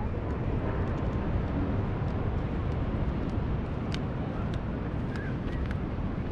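Steady wind and ocean-surf rumble with no music, crossed by light footsteps ticking on wooden pier boards about twice a second.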